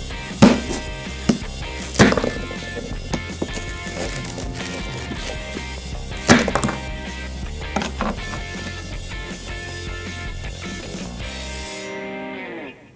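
A Mora Companion knife cutting a stale French baguette on a plastic cutting board: sharp crunches and knocks as the blade breaks the crust, the loudest about half a second, two seconds and six seconds in, with a few lighter ones later. Background music with a steady bass beat plays throughout.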